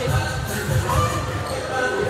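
Volleyballs being hit and bouncing off a hardwood gym floor during warm-up, a few separate impacts, over music and voices in a large gym.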